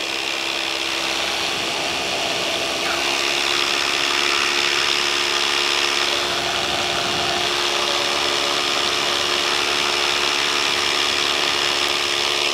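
Paramotor engine and propeller running steadily in flight, a continuous even hum at constant power.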